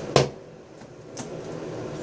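A single sharp tap or knock just after the start, as a small cardboard box is handled. Then quiet small-room tone with one or two faint ticks.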